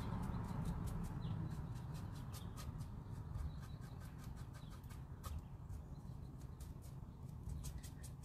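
Faint low background rumble with scattered light, sharp clicks and ticks.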